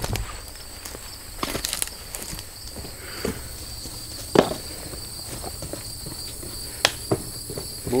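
Steady high buzzing of an insect chorus, crickets, in late-summer grass, with a few scattered clicks and knocks of handling or footsteps, the sharpest about halfway through.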